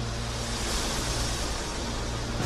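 Broadcast intro sound effect: a whoosh of noise that swells and then eases off, over a steady low bass tone.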